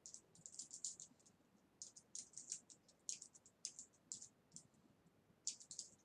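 Faint typing on a computer keyboard: irregular runs of light, sharp key clicks, with short pauses between the runs.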